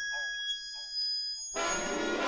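G-funk gangsta rap track in a short beat break: a single pitched, bending synth blip repeats as a fading echo about every half second. The full beat comes back in about a second and a half in.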